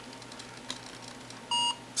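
Android phone's Barcode Scanner app (ZXing) giving one short beep about one and a half seconds in as it decodes a QR code, signalling a successful scan.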